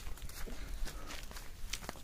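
Footsteps of a person walking on a dirt path, faint and uneven.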